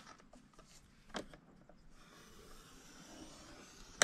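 Faint scratching of a scoring stylus drawn along the groove of a scoring board through paper, with a single light click about a second in.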